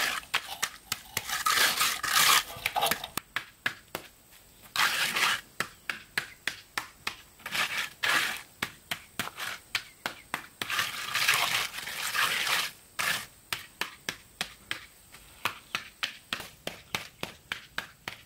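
Wet concrete being smoothed by hand: long scraping passes of a wooden screed board and a steel trowel over the fresh slab, alternating with runs of quick short trowel strokes, about two or three a second.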